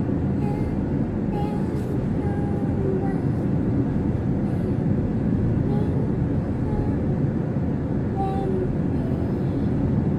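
Steady rumble of a car's tyres and engine heard from inside the cabin while driving along a dirt road.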